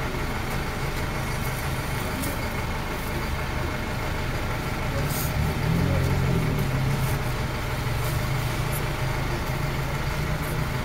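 A motor vehicle's engine idling steadily, a little louder from about halfway, under indistinct murmuring voices of a crowd.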